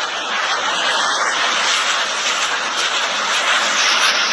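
Truck-mounted multiple rocket launchers firing a salvo: a loud, steady rushing roar of rocket motors that runs on without a break.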